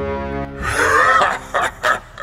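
Sustained music tones end about half a second in, followed by a man's laugh: one long, loud, breathy burst and then short pulses.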